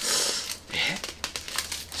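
A paper score-report mailer being torn and crumpled by hand: a loud rip at the start, another about a second in, then crinkling.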